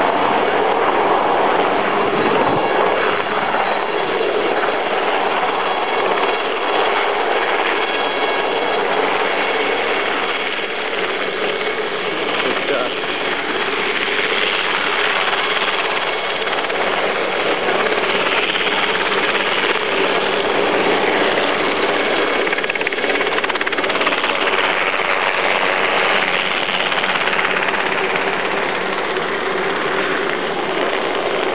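Crowd noise: many voices talking and calling out at once, a steady din without clear words.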